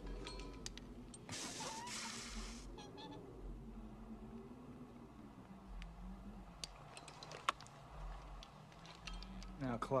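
Hot wire hissing for about a second and a half as it is touched to a blood sample in a petri dish, over a low, wavering drone of film score. A few light clicks follow later.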